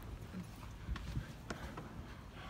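Footsteps on a hard floor: a few faint, irregular knocks of shoes as people walk, over a low murmur.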